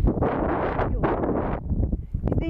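Wind buffeting the microphone with a low rumble, while olive leaves rustle in gusts that swell and fall several times.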